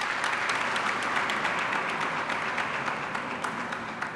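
Audience applauding, many hands clapping together in a dense patter that eases slightly near the end.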